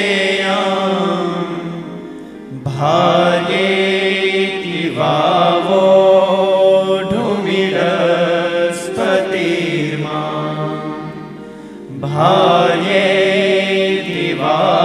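A devotional verse sung in long, melodic chanted phrases over a steady held drone, with short pauses for breath about two seconds in and near the end.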